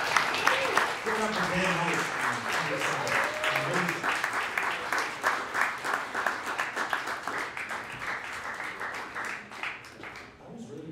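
Audience applauding, with a voice heard over the clapping from about one to four seconds in; the clapping thins out near the end.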